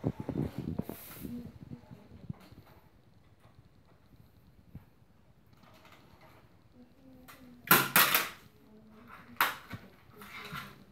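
Light clicks and clatter of plastic LEGO pieces being handled, with two loud brief bursts of rustling clatter about eight and nine and a half seconds in.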